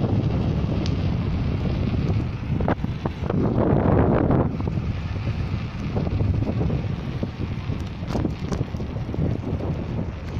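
Wind buffeting the microphone of a camera carried on a moving bicycle: a steady low rush that swells louder about four seconds in, with a few short clicks.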